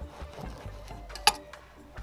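Knife cutting through the crust of a homemade bread loaf on a wooden board: faint crackly sawing, then one sharp click of the knife on the board a little past halfway.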